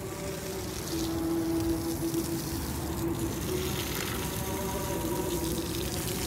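Water spraying steadily from a garden hose onto soil at the base of a tree, with a faint steady hum underneath.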